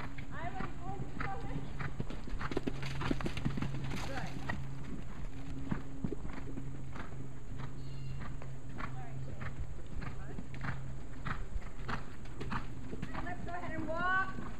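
Horse hooves striking the arena's sand footing as horses move past at a trot or canter, in an uneven run of dull beats, over a steady low hum.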